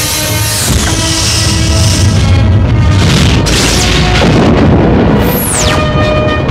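Film studio logo music: held orchestral tones over a deep, rumbling boom, with a sharp falling whoosh about five seconds in as the logo settles.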